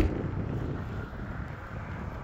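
Wind buffeting the microphone outdoors, a steady low rumble, with a single sharp click right at the start.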